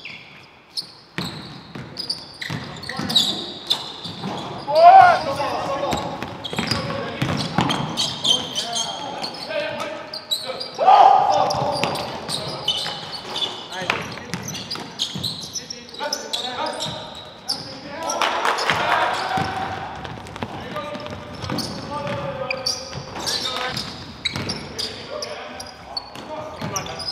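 Live basketball game sound on a hardwood gym floor: a ball dribbling and bouncing amid players' voices calling out across the court, loudest about five and eleven seconds in.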